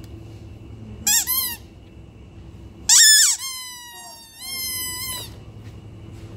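Squeaky shopping trolley wheel: a short run of quick rising-and-falling squeaks about a second in, then a loud squeal about three seconds in that carries on as a long, slightly falling whine for about two seconds.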